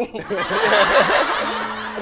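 Studio audience laughing, with a brief sharp high burst about one and a half seconds in.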